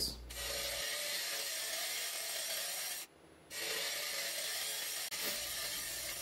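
Jamieson hollowing rig's cutter scraping out the inside of a spinning oak bowl on a wood lathe: a steady hiss of wood being cut. It breaks off briefly about three seconds in.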